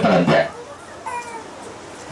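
A man's amplified voice ends a phrase about half a second in, followed by a pause in which a faint, brief high-pitched call sounds about a second in.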